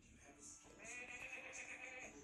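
A cartoon sheep bleating from a television's speaker: one long, faint bleat that starts a little under a second in.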